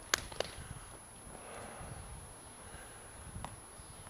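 Quiet outdoor background with a few short, sharp clicks: two in the first half second and one more near the end.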